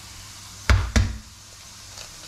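A raw egg knocked twice against the rim of a stainless steel mixing bowl to crack its shell: two sharp knocks about a third of a second apart, each with a short ring.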